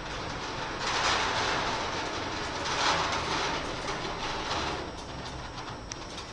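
A small wheeled cart being pushed across the floor, its wheels rumbling and the glass cruets and items on it rattling, in uneven surges that die away as it comes to rest at the end.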